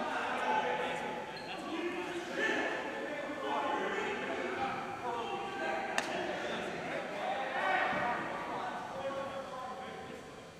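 Indistinct voices of players and referees chattering, echoing in a large gym hall, with one sharp knock about six seconds in.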